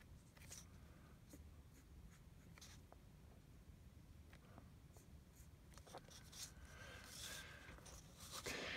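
Fountain pen nib scratching faintly across card in short hatching strokes, with light ticks as it touches down, and a louder, longer scratchy stretch near the end.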